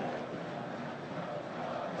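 Steady stadium ambience on a televised football broadcast: an even crowd hum with no distinct calls or impacts.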